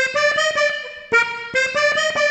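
A major-minor organetto (diatonic button accordion) plays a two-note figure on its treble buttons: a short lower note stepping up to a longer higher one, played twice with a brief break about a second in.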